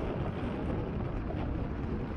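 Steady wind noise rushing over the microphone of a bike-mounted action camera while riding a road bike.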